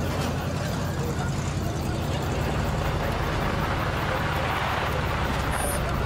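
A car engine running steadily with road noise, the noise building somewhat in the second half as the vehicle drives on.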